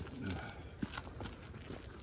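Footsteps on dry dirt and leaf litter, a few light scuffs and crunches.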